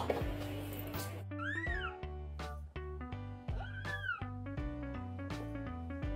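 A domestic cat meows twice, about a second and a half in and again about four seconds in. Each meow rises and then falls in pitch, over background music.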